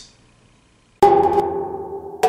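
A transition music sting: about a second of near silence, then a sudden percussive hit with a ringing pitched tone that slowly fades.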